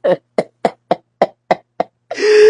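A man laughing in short, breathy pulses, about four a second.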